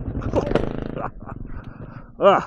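Honda CRF250F single-cylinder four-stroke dirt bike engine running as the bike tips over onto its side, with a short grunt from the rider about half a second in. The engine sound drops away about a second in.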